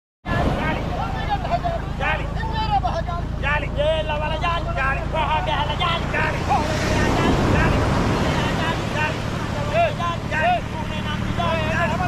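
Voices of a beach-seine hauling crew calling and shouting over one another. Behind them is a steady surf wash with a low rumble, swelling as a wave washes in about seven seconds in.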